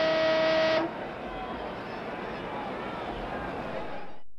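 A ringside buzzer holding one steady tone, which cuts off just under a second in: the signal that the rest between rounds is ending. Then the arena crowd murmurs.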